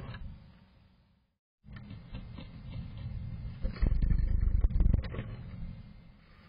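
Black-capped chickadee scrabbling in the wood shavings inside a wooden nest box, close to the box's camera microphone: rustling, scratching and knocks against the box, heaviest about four seconds in, after a short silence about a second in.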